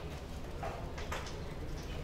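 A few light clicks from laptop keys, about half a second to a second in, over a steady low hum.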